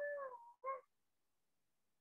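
A faint, high-pitched animal call, with a second, shorter call right after it.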